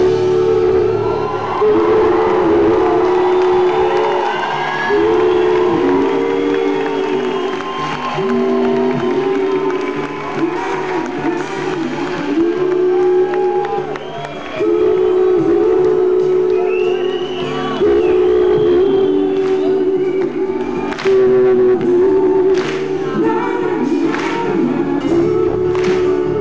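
A band playing live while several voices sing long, held notes together. In the second half, sharp beats fall about once a second.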